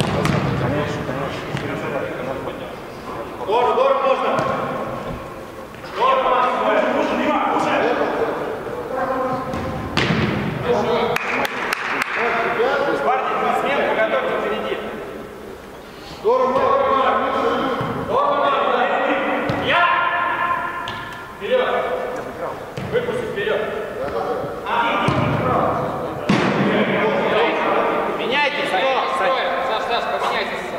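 Footballers shouting to one another during an indoor five-a-side game, echoing in the hall, with a few sharp thuds of the ball being kicked.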